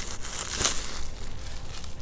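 Plastic bubble-wrap packaging rustling and crinkling as it is handled, with a few sharper crackles.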